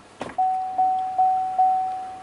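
Four quick electronic chimes from the GMC Canyon's dash, each fading, about two and a half a second, after a short click. This is the warning chime as the truck goes into reverse and the backup camera comes on.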